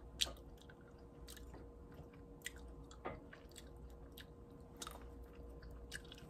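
A person chewing fresh blueberries close to the microphone: faint, scattered mouth clicks and pops, the sharpest about a quarter of a second in.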